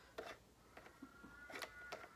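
Faint handling of a plastic shower gel bottle with a twist-off cap: a few small clicks and a thin creak of plastic over the second half.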